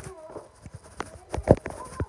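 A few irregular sharp knocks and thumps, the loudest about one and a half seconds in.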